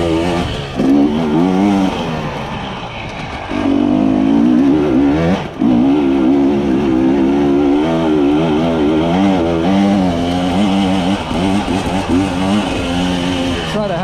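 Husqvarna TE300i two-stroke dirt bike engine revving up and down under constantly changing throttle while being ridden, with the throttle dropping off briefly about three and a half and five and a half seconds in.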